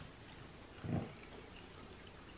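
A brief, low closed-mouth 'mm' hum from a person chewing a gummy candy, about a second in; otherwise only quiet room tone.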